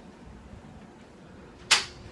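Low background hiss, then a single sharp, short impact near the end, from the glass balcony door that has been locked.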